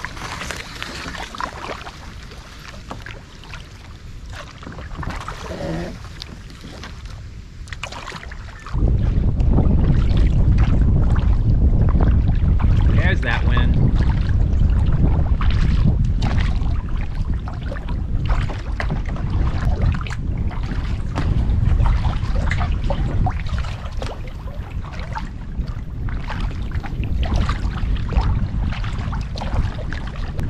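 Kayak paddle strokes, with water splashing and dripping off the blades as the boat moves along. About nine seconds in, heavy wind buffeting the microphone comes in suddenly and continues under the strokes.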